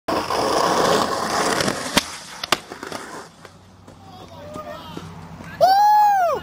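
Skateboard wheels rolling loudly over rough concrete, then two sharp board clacks about half a second apart, around two seconds in. Near the end a person lets out a loud call whose pitch rises and then falls.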